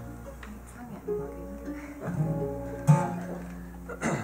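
Acoustic guitar strummed and picked in a few loose chords and single notes, the loudest strum about three seconds in.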